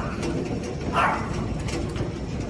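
Heavy hail falling in a storm: a dense, steady clatter of hailstones, with two short calls falling in pitch about a second apart.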